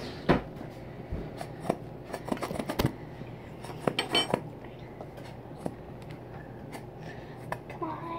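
Scattered light clicks and knocks from plastic bottles, a box and a plastic tub being handled on a tabletop, with a quick run of sharper clicks about four seconds in.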